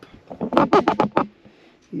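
A quick run of sharp clicks and knocks, about eight in under a second, as the shotgun and its metal parts are handled.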